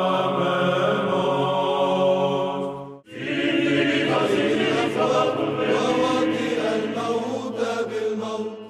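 Orthodox church chant sung by a choir over a steady held low drone. It breaks off abruptly about three seconds in, and another choral chant passage begins straight away.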